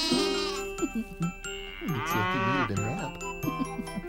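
A cow mooing sound effect over light children's background music, the moo swelling and wavering about halfway through.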